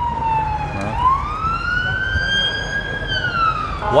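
An emergency-vehicle siren wailing slowly. The tone falls at first, then rises and holds for about two seconds, then begins falling again, over a low rumble of road traffic.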